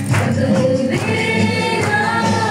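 A crowd singing a Mizo zai song together, with a steady percussion beat under the voices.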